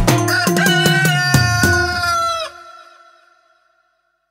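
A rooster crowing over the last bars of a soca beat; the music and the crow stop together about two and a half seconds in, leaving a brief fading echo.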